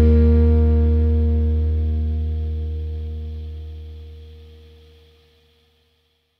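Final held chord of a rock song, distorted electric guitars and bass ringing out together and dying away smoothly to silence about five and a half seconds in.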